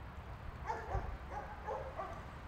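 A Tamaskan dog giving a few short, pitched whimpering calls in quick succession, fairly faint.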